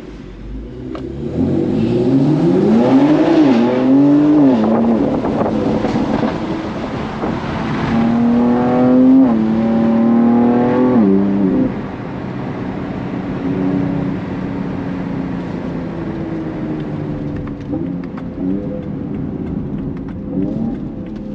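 Inside the cabin of a 750 hp BMW X3 M, its twin-turbo S58 straight-six pulls hard with its pitch climbing, broken by quick upshifts where the note drops back, twice in the first five seconds and twice more around nine to eleven seconds in. In the second half it settles to a steadier, lower note at part throttle.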